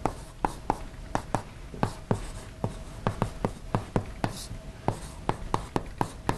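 Chalk writing on a blackboard: an irregular run of sharp taps, about three a second, as an equation is written out.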